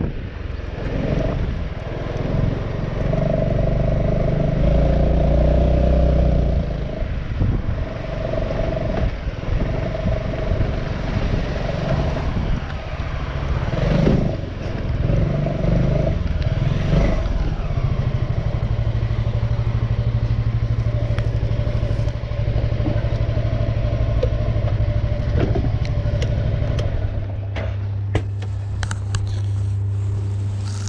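Honda Forza maxi-scooter's engine running as it rides slowly through streets, the note rising and falling with the throttle. From about 18 seconds in it settles to a steady idle with the bike stopped, and the note shifts slightly a few seconds before the end.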